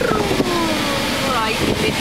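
Voices talking and exclaiming inside a moving car, with a drawn-out falling vocal sound in the first second, over steady engine and road noise in the cabin.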